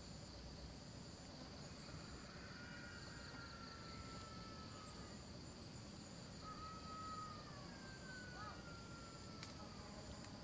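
Faint, steady chorus of insects: an unbroken high buzz with a higher trill that pulses on and off. From about three seconds in, a few long, thin whistling tones slide slowly down in pitch over it.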